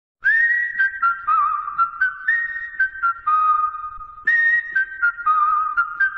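Intro jingle carried by a single high, whistle-like melody, one note at a time, stepping up and down with short breaks between notes; a second phrase begins about four seconds in.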